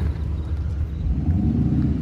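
Car engines running with a steady low rumble; over the last second an engine's pitch rises.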